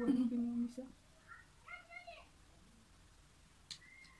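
Short bits of a woman's speech in a small room in the first half, then quiet with a single light click near the end.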